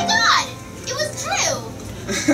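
Audience cheering with a few whooping shouts, right after a held sung note cuts off.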